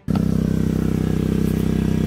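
An engine running steadily nearby, a loud, even low drone, with a faint knock or two of plastic parts being handled.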